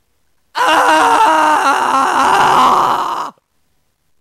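A person's long, wavering cry of pain, a groaning scream lasting nearly three seconds. It starts abruptly about half a second in and cuts off sharply.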